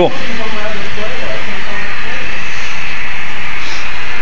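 Steady, loud, even hiss of background noise, with faint voices in the background.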